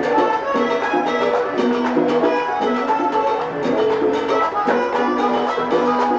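Vallenato music played live: a diatonic button accordion plays a quick instrumental run of notes over a steady percussion beat.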